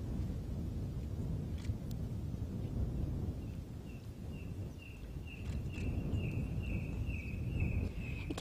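Open-air bush ambience with a low, even rumble, and from about three seconds in a small animal's high chirp repeated steadily, two or three times a second.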